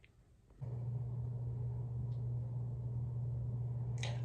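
Bathroom exhaust fan running with a steady low hum. It cuts in suddenly about half a second in, after near silence.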